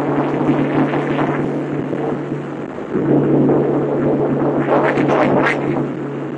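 Cabin sound of a Mitsubishi 3000GT VR-4's twin-turbo V6 pulling at freeway speed: a steady engine drone mixed with road and wind noise. The level sags briefly just before the middle, then comes back up.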